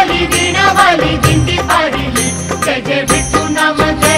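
Marathi devotional song to Vitthal (bhaktigeet), with a singing voice over steady rhythmic percussion.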